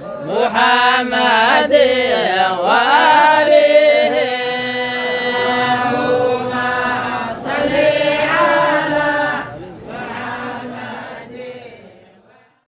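Unaccompanied group chanting of a devotional blessing on the Prophet Muhammad (salawat): several voices sing together in long, held notes, then die away over the last couple of seconds.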